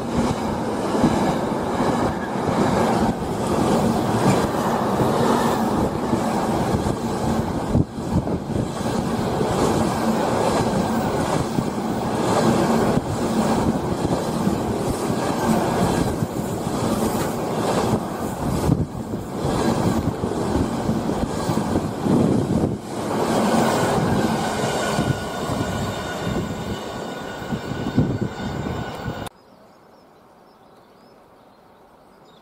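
Container wagons of a freight train rolling past at close range: steady wheel-on-rail rumble with repeated clatters as the wheels cross rail joints, and a thin high wheel squeal joining in over the last few seconds. The sound cuts off suddenly just before the end.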